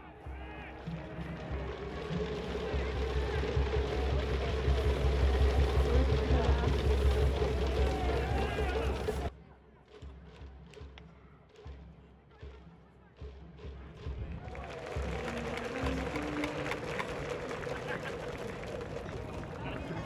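Baseball stadium sound of cheering music and crowd from the stands, with a steady held note. It cuts off abruptly about nine seconds in, leaving a few seconds of quieter ground sound with scattered knocks, then the music and crowd come back.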